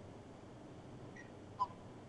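A quiet pause with a faint steady hiss, and one brief faint blip about one and a half seconds in.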